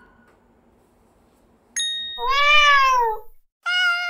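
Edited-in sound effects: a short bright ding, then a single cat meow that rises and falls over about a second, then a steady held note that starts near the end.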